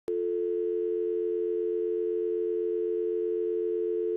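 A steady telephone dial tone: a low two-note hum held unbroken at one pitch.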